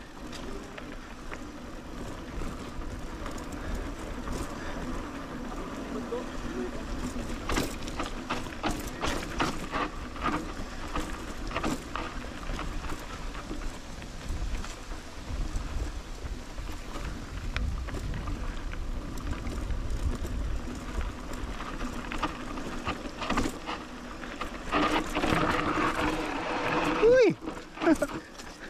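Mountain bike rolling down a rough, loose dirt trail: steady tyre noise with a low rumble, and frequent clicks and knocks as the bike and its handlebar bag rattle over bumps and ruts. It gets louder and busier near the end.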